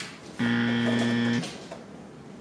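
A steady buzz lasting about a second, starting and stopping abruptly.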